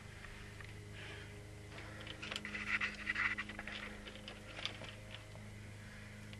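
Faint scraping and light clicks from about two seconds in, as the shaping machine's feed handle is taken by hand and turned, running the screw through its cast aluminium nut. A steady low hum runs underneath.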